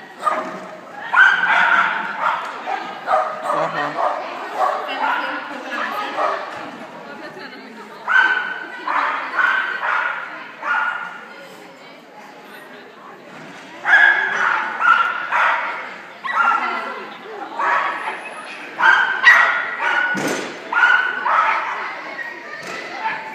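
Pumi barking and yipping repeatedly, in runs of quick barks with short pauses between the runs.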